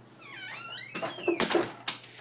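A wooden door squeaking on its hinges in a few wavering glides, then several sharp clicks and knocks about a second and a half in.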